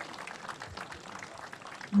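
A crowd applauding: many hands clapping steadily at a moderate level, with no single voice standing out.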